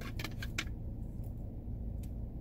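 A few light clicks and rustles in the first second as a plastic skull tumbler and its lid are handled, then a steady low rumble of the car interior.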